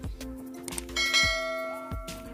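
A single bell strike about a second in, ringing and fading over about a second, over steady background music.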